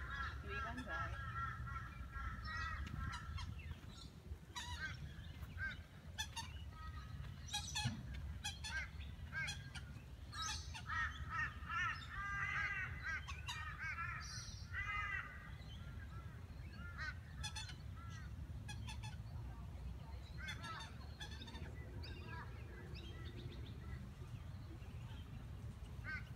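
Birds calling repeatedly in short, arched, honking calls, busiest about halfway through, over a steady low rumble.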